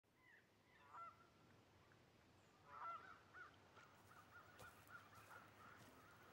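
Faint honking of geese: a few scattered calls, then a quicker run of about three honks a second.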